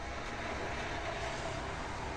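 Steady background hum and hiss of the workshop, with no distinct knocks or other events.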